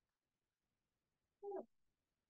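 Near silence, then about one and a half seconds in, a single short spoken "yeah".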